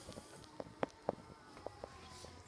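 Power liftgate of a 2018 Chevrolet Equinox closing under its own motor: a faint, steady running sound with several short, sharp clicks.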